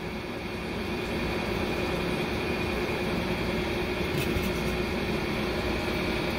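Steady machine hum with one constant tone running under it. A few faint light ticks come about four seconds in.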